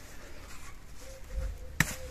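Hands handling the stems and leaves of an eggplant plant, quiet rustling with one sharp click near the end.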